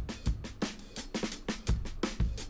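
Drum-kit loop of kick, snare and fast hi-hats playing through a dynamic saturation plugin in inverse mode. The quieter detail between the kicks and snares is distorted and pushed up, so the kit pumps, as if the drummer were moving backwards and forwards.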